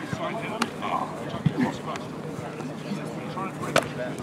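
Voices of rugby players calling across a training pitch, with two sharp knocks: one about half a second in and one near the end.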